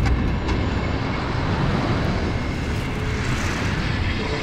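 Snow slab avalanche sliding down a slope: a loud, steady, deep rumbling rush with no distinct strokes.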